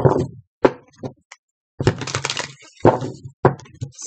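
Tarot cards being shuffled and handled: a string of short rustling, slapping bursts, the longest lasting about half a second just before the two-second mark.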